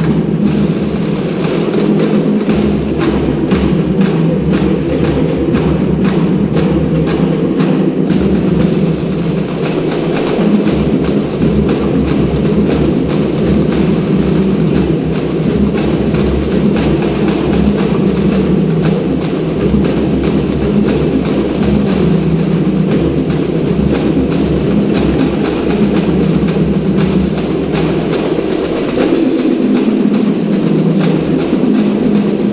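A pipe band playing: bagpipes sounding a tune over their steady drone, with drums beating a constant rhythm underneath.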